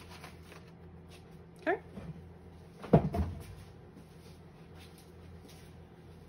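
A short squeak about a second and a half in, then a loud knock with a low thud about three seconds in, like a cupboard door or drawer being worked in a small room.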